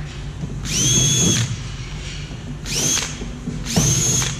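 Cordless drill drilling screw holes through the plastic deck of a kayak around a hatch rim. It runs in three short bursts, each spinning up quickly to a steady high whine.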